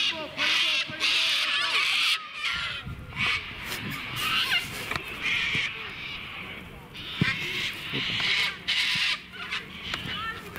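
A series of harsh, rasping bird calls, several in a row, each under a second long, with voices faintly behind.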